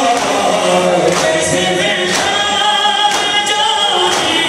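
A noha sung through the hall's loudspeakers, with a crowd of men chanting along in unison. Hands striking chests in matam sound as sharp slaps together, roughly once a second.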